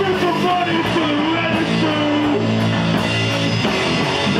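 Live rock band playing loudly: amplified electric guitars and bass chords over drums, with a voice singing a wavering line above them.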